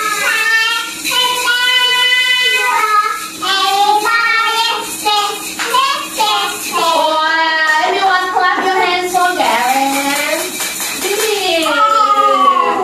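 A children's action song sung in a young child's voice, with small hand shakers rattling along.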